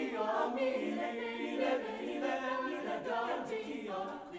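Mixed-voice chamber choir singing a cappella, men's and women's voices together in sustained, moving chords.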